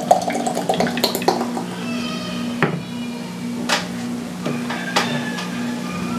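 Beer pouring from an aluminium can into a stemmed glass, the head foaming up, followed by a few light knocks of can and glass on the table. A steady low hum runs underneath.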